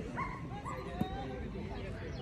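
A German shepherd giving a few short, high yips, over the background chatter of people. There is a sharp click about a second in.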